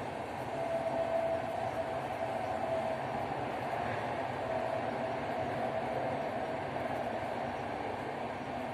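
Steady rumbling background noise with a faint hum that rises in for a few seconds twice.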